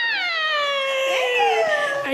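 A woman's long, high-pitched excited squeal that slides steadily down in pitch, fading out after about a second and a half.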